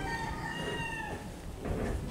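A rooster crowing once, a long held call that falls slightly in pitch and ends just over a second in, followed by a few short knocks near the end.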